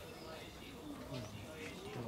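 A low male voice chanting in long, slowly gliding tones, as a Shinto priest reciting a norito prayer before the portable shrine.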